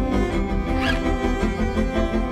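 Cinematic background music with sustained tones and a steady low pulse, crossed by a brief swish just under a second in.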